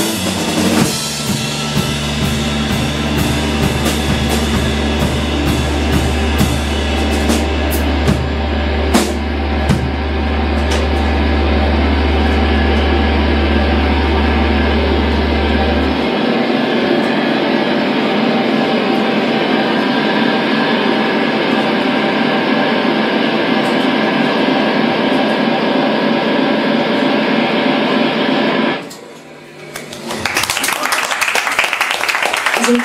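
Live rock band winding a song down: drums and cymbals crash over held electric guitars and bass. The low bass drone stops about halfway and a sustained droning wash from the guitar amps carries on, then cuts off suddenly just before the end.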